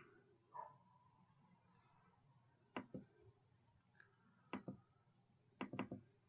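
Faint computer mouse clicks, several in quick pairs, over near silence.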